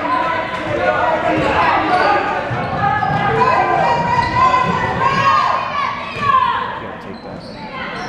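Basketball game in a large gym: a ball dribbled on the hardwood floor, sneakers squeaking, and players and spectators calling out, all echoing in the hall.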